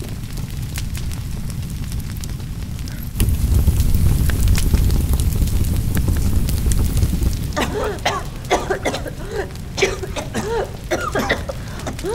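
Dramatised sound of a building on fire: a low rumble of flames with scattered crackling that swells suddenly about three seconds in. From about seven seconds in, short voice sounds (coughs and cries) come in over the fire.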